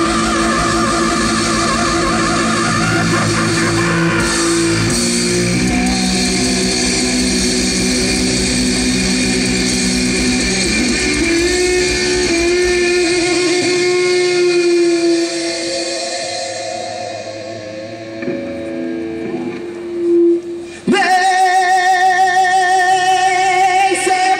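Rock band playing live on stage: electric guitars, bass and drums, loud and dense. About fifteen seconds in the band thins out to a quieter stretch, then comes back in loud about twenty-one seconds in, with a wavering held note over it.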